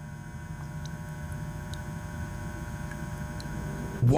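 A steady low hum, like an electrical or ambient drone, slowly getting a little louder, with a few faint scattered ticks.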